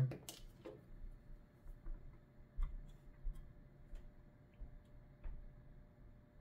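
Faint, scattered light clicks and taps of multimeter test probes being handled and touched against a graphics card's circuit board, over a faint steady hum.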